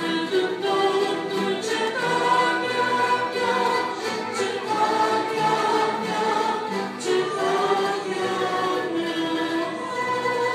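Choir singing a Romanian hymn with an orchestra of violins, voices in long held notes, with a new phrase starting about seven seconds in.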